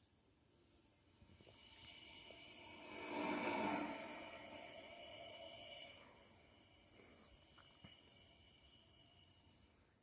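Can of Pepsi Max Cherry fizzing after a sugar-free Polo mint was dropped into it, the mint setting off a rush of bubbles: a faint steady hiss that starts about a second in, swells, then fades away just before the end.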